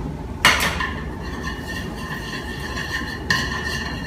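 Hot butter sizzling in a nonstick frying pan. The sizzle starts abruptly about half a second in, runs steadily, and jumps up again near the end, with light clinks from the pan and chopsticks.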